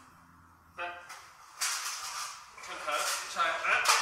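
Metal armour plates and aluminium chainmail scraping and clinking as a breastplate is worked up and lifted off over the head, growing louder toward the end. Short straining vocal sounds come with the effort.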